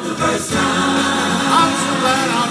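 Gospel choir singing into microphones, holding a long sustained note from about half a second in.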